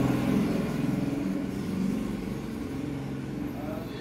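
Low, steady hum of a motor engine running, easing off slightly toward the end, over the light scratch of a graphite pencil shading on paper.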